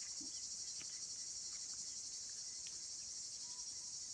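A steady, high-pitched insect chorus continuing without a break, with a few faint scattered clicks.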